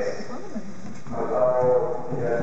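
People's voices talking, with a drawn-out vocal sound from about a second in.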